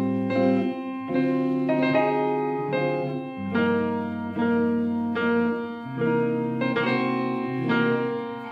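Grand piano playing alone: a slow run of sustained jazz chords, a new chord struck about every second over low bass notes.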